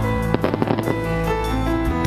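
Music with a quick run of fireworks pops and crackles lasting about half a second, starting about a third of a second in.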